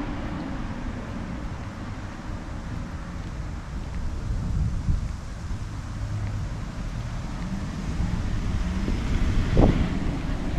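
Wind buffeting the GoPro Hero9's built-in microphone, which has no wind reduction switched on, giving a steady low rumble that grows stronger near the end. Road traffic may lie under the rumble.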